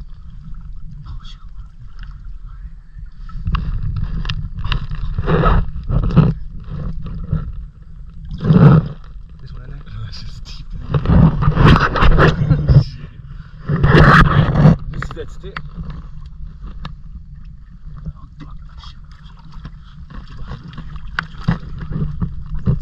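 Shallow river water sloshing and splashing as hands grope around inside a half-submerged tire, feeling for fish. It comes in several louder surges about a third and two thirds of the way through, over a steady low rumble.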